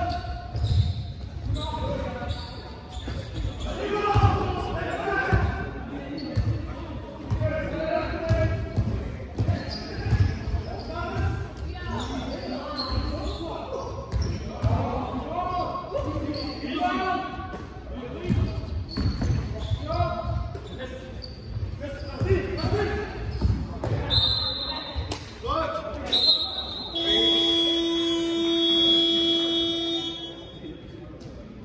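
A basketball being dribbled and bouncing on a sports-hall floor, with running footsteps and players calling out, all echoing in a large hall. Two short high whistle blasts come a few seconds before the end, then a buzzer sounds steadily for about three seconds near the end.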